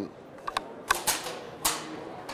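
Bolt of a Browning A-Bolt III bolt-action rifle being worked open with the safety on, after its bolt-release button is pressed. It gives a few sharp metallic clicks spread over about two seconds, with soft handling rustle between them.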